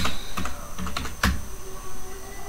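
Computer keyboard keys tapped one at a time, a handful of separate clicks at an uneven pace as a word is typed.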